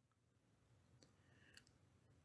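Near silence, with a couple of very faint clicks.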